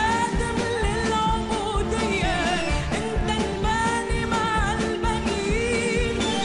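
A song: a singer's melodic vocal line, with held and bending notes, over instrumental backing and a steady beat.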